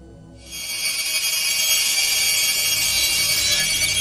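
High, shimmering electronic tone from a documentary music score, coming in about half a second in and held steady.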